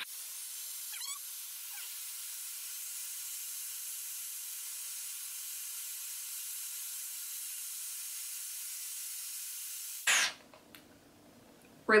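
Shark FlexStyle hair styler with its curling-wand attachment blowing air steadily through a wrapped section of hair on its highest airflow setting, a continuous hiss. It stops about ten seconds in with a brief louder burst as it is switched off.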